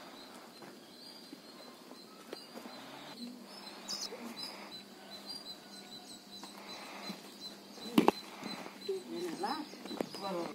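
Quiet outdoor background with faint voices and a steady faint high tone, broken by one sharp click about eight seconds in; a voice is heard briefly near the end.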